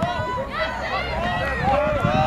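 Several voices shouting and calling out over a soccer field during play, overlapping, with no clear words.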